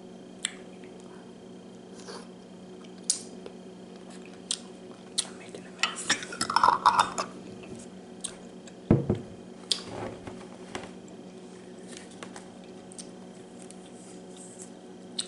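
Glass clinks and taps as a glass jar of maraschino cherries and a champagne flute are handled, with a short run of clattering about six seconds in and a dull knock on the table about nine seconds in. A faint low hum runs underneath.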